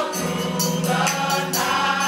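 Gospel choir singing in full voice with a live band of organ, keyboard, bass guitar and drums, the bass notes held steady under regular drum and cymbal strikes.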